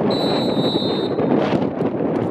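Referee's whistle blown once, a steady high-pitched blast of about a second, signalling that the penalty kick may be taken, over wind noise on the microphone.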